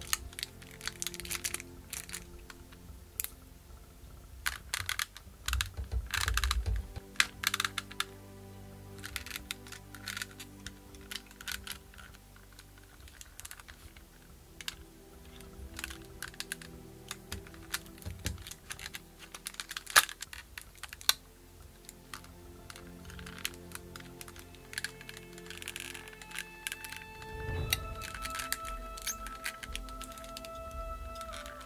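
Hot Toys 1/6-scale diecast Iron Strange figure being handled as its joints are worked, giving many irregular small clicks and clacks, over background music.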